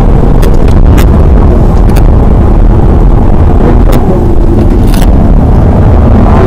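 Inside the cabin of a BMW 120d driven hard: the four-cylinder turbodiesel's engine note shifts in pitch under a loud, steady rumble of road and wind noise that overloads the microphone. A few sharp clicks or rattles cut through.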